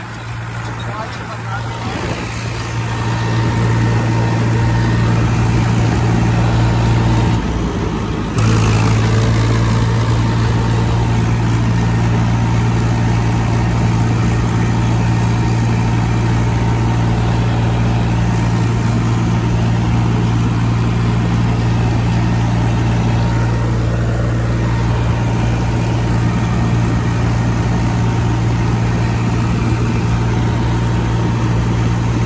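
Powertrac Euro 50 tractor's three-cylinder diesel engine running steadily at road speed while towing an empty trailer. The sound builds over the first few seconds, drops away for about a second about seven seconds in, then comes back at once and holds steady.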